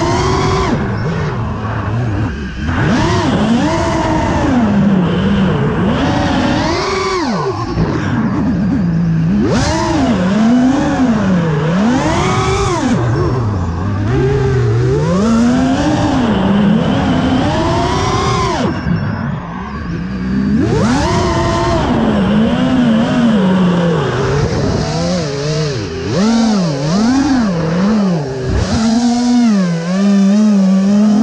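FPV freestyle quadcopter's motors and propellers whining, the pitch swooping up and down every second or two as the throttle is punched and eased through the flight.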